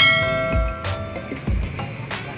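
A bell-like chime, the sound effect of an animated subscribe-button overlay, rings out at the start and fades over about a second. Background music with a steady beat plays underneath.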